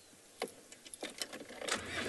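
Open safari vehicle: a single click about half a second in, then low engine and vehicle noise that grows louder toward the end, after a near-silent start.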